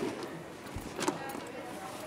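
A stiff black waterproof roll-top bag being opened and handled, its coated fabric crinkling and rustling, with a sharper crackle and knock about a second in.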